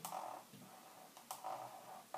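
Dry-erase marker squeaking across a whiteboard in two short strokes, each about half a second long and each beginning with a tap of the tip on the board.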